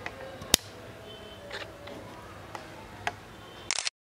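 Quiet room noise with one sharp click about half a second in and a few fainter clicks later. A short burst of hiss follows near the end, then the sound cuts out completely.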